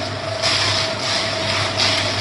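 Bamboo toothpick polishing machine running: its rotating drum is tumbling a load of toothpicks, a dense rattling hiss that swells and fades about once a second with each turn, over a steady motor hum.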